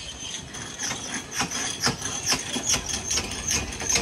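A rotating kiddie car ride's mechanism running: a steady high squeal with a fast run of metallic clicks, about four a second, getting stronger about a second in.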